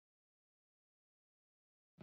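Silence: the soundtrack is completely blank.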